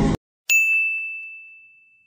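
A single message-notification chime about half a second in: one clear, high ding that rings on and fades away over about a second and a half.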